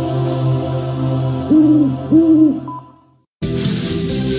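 Two owl hoots, each about half a second long, over a low steady music bed that fades out. After a moment of silence, new upbeat music starts abruptly near the end.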